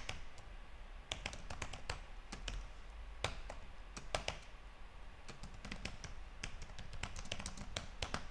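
Typing on a computer keyboard: irregular key clicks coming in quick runs with short gaps between.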